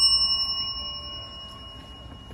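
A bright bell-like chime, struck just before, rings on and fades away over about a second and a half, in a clear pitch with high overtones. It sounds like the ding sound effect added as the caption comes up.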